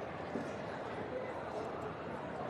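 Steady, indistinct murmur of many people talking in a large hall.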